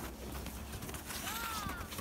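A faint, distant child's voice calling out briefly about a second and a quarter in, over low, steady background noise.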